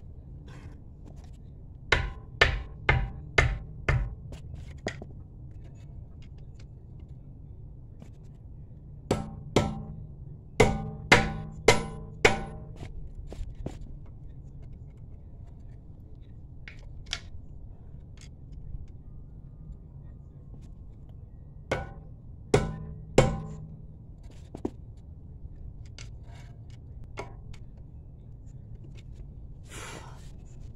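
Hammer blows striking the tire of a BMW rear wheel that is stuck on its hub, to knock it loose. Each blow is a thud with a short ring. They come as five quick blows, then a run of about seven a few seconds later, then three more near the end.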